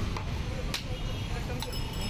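Steel utensils clinking: about three sharp metallic clinks with a short ring, over steady street traffic noise and voices.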